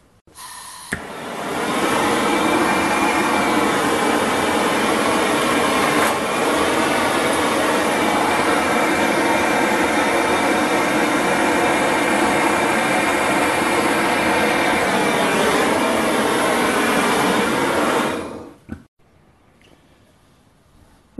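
Handheld gas torch: a click about a second in, then a steady, loud hissing flame that holds for about sixteen seconds and cuts off near the end. The flame is heating a piece of steel stock in a vise to release a ground-down washer from it.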